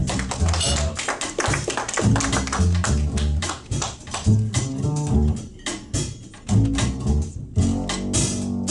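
Live jazz quartet playing a blues, a plucked upright double bass line to the fore over drum-kit strokes and other instruments in the mid range.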